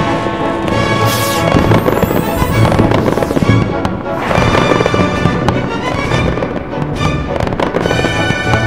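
Music with fireworks sound effects laid over it: sustained chords under repeated bursts and crackle, with a sharp rush of hiss about a second in.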